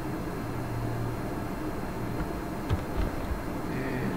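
Steady low background hum of room noise, with two soft knocks close together about three-quarters of the way through.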